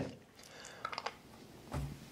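Faint wet mouth clicks and smacks of someone sucking a sour hard candy, with a short low murmur of a voice near the end.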